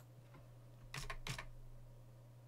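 Three quick key clicks on a computer keyboard, about a second in, over a steady low electrical hum.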